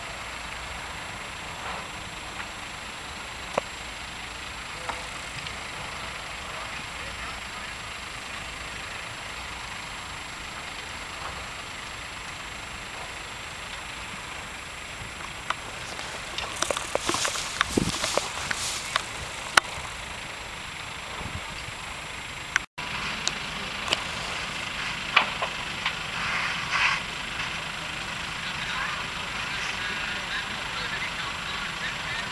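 Steady rushing noise of a large chemical train fire burning at a distance, with a cluster of sharp clicks and crackles a little past the middle. Faint voices are heard after a cut about three quarters of the way through.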